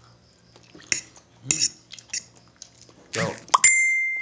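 A few short eating sounds, then near the end a metal fork strikes a dish with a sharp clink that keeps ringing for over a second.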